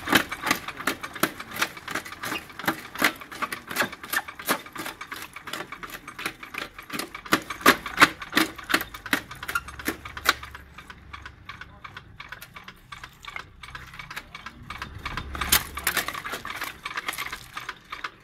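Small jaw stone crusher driven by a single-phase electric motor, breaking stone: rapid, irregular cracking and clattering of rock fragments in the jaws over a faint low motor hum. The clatter thins out a little past the middle and picks up again near the end as more stone is fed in.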